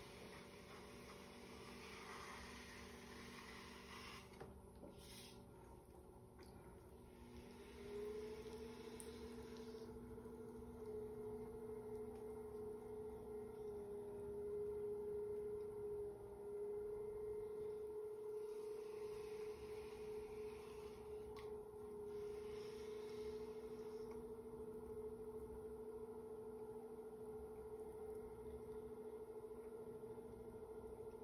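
Electric pottery wheel's motor giving a faint steady whine, stepping up slightly in pitch and level about eight seconds in, while a lump of clay is centered on the spinning wheel head.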